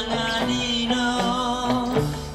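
Electric guitar on an Epiphone Casino hollow-body being strummed along with a rock band recording. Pitched lead lines play over a steady beat.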